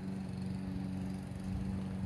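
Steady, low mechanical hum of a running motor, holding one unchanging pitch throughout.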